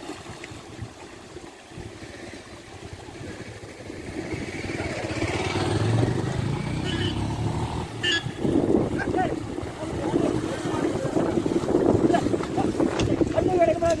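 Voices mixed with a nearby motor vehicle's engine, growing louder about four seconds in and staying busy to the end.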